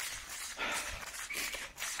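A runner breathing hard through the mouth while jogging, a few heavy breaths in and out between sentences.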